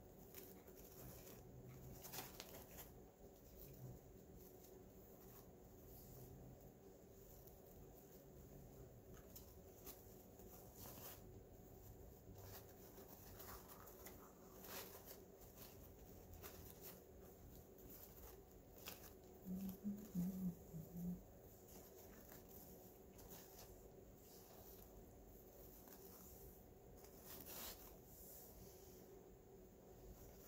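Near silence with faint, scattered rustling and crinkling of wired ribbon as a bow's loops are fluffed and shaped by hand, and a short low hum about two-thirds of the way through.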